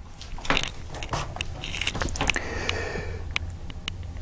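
Fountain pens being handled and set down: a string of small clicks and taps, with a brief soft rustle in the middle.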